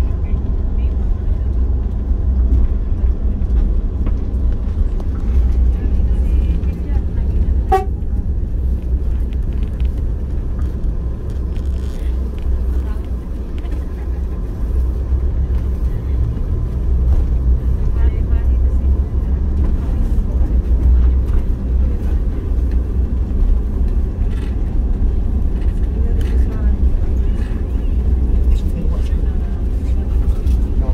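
Steady low engine and road rumble heard from inside a vehicle driving down a winding mountain road.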